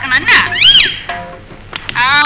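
Rose-ringed parakeet squawking: two short, high calls in the first second, each rising and falling in pitch.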